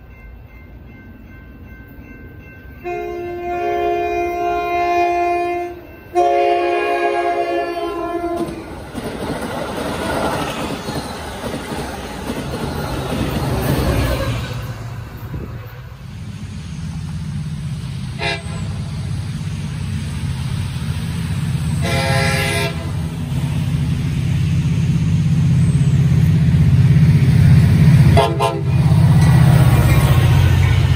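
Metra commuter train's diesel locomotive air horn sounding two long chorded blasts as the train approaches, followed by the noise of the train running in. Then another Metra diesel locomotive's low engine rumble grows louder as it approaches and passes, with three short horn toots.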